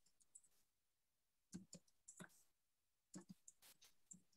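Faint computer keyboard typing: two short runs of key clicks, one about a second and a half in and another after three seconds.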